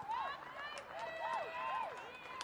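Several high voices shouting and cheering in short rising-and-falling calls of celebration after a goal, with a few sharp claps.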